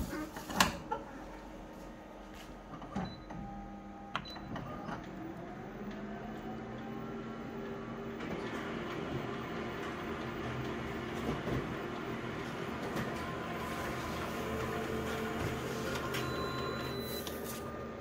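Office colour photocopier making a one-page full-colour copy. A few clicks at the start are followed by a steady mechanical whirring with several held tones, which grows louder about eight seconds in.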